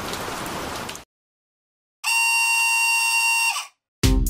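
Cartoon rain sound effect that cuts off abruptly about a second in. After a second of silence comes a steady, flat buzzer-like electronic tone, lasting under two seconds.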